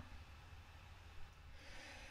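Near silence: room tone with a steady low hum, and a faint intake of breath near the end.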